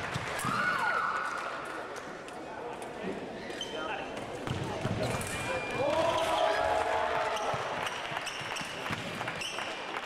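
Sabre fencing bout: quick footwork and blade contacts on the piste make short sharp clicks and knocks throughout. A brief cry comes just under a second in, and a fencer's long shout about six seconds in follows a scored touch.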